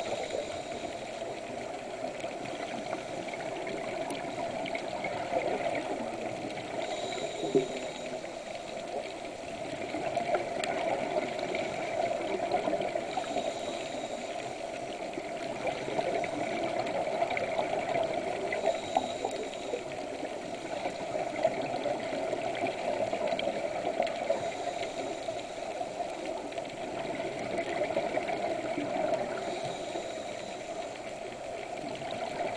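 Scuba diver breathing through a regulator, heard underwater: a brief hiss on each inhale and bubbling exhalations, repeating about every six seconds over a steady rush of water noise.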